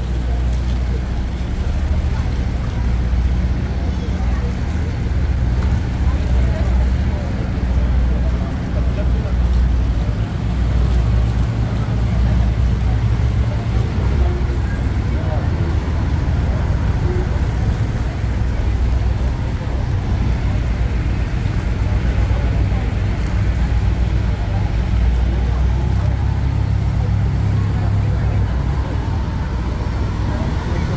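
Diesel engines of a passenger ferry running close by as it manoeuvres at the dock: a steady low rumble that swells and eases now and then, with a murmur of voices over it.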